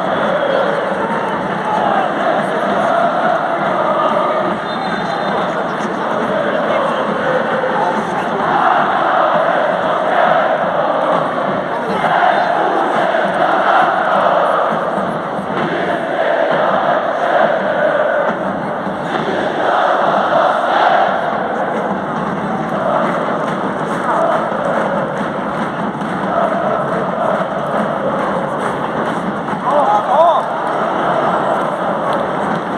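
Football stadium crowd chanting and singing together, a loud continuous mass of voices that swells and ebbs in waves.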